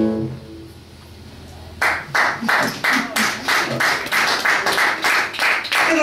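The band's last guitar chord rings out and fades away, then a small audience applauds from about two seconds in, the separate hand claps coming about three a second.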